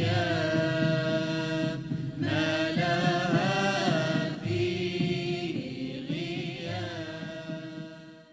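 Sung devotional poetry: a chanted vocal melody in phrases over a steady held drone, fading out near the end.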